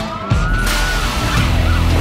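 Police siren wailing, rising in pitch over the first second, then switching to quick up-and-down yelps, heard over background music with heavy sustained bass.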